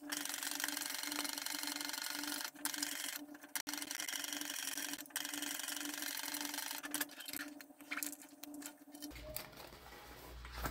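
Sewing machine stitching a seam in several runs, with short pauses about two and a half, three and a half and five seconds in. It stops about seven seconds in, and quieter handling sounds follow.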